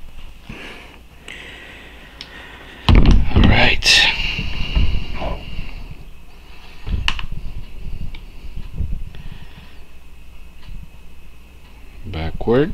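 Handling noise from hands fitting a small toy-car wheel onto a thin steel axle rod: irregular bumps and rustles, loudest about three to four seconds in, with another bump about seven seconds in.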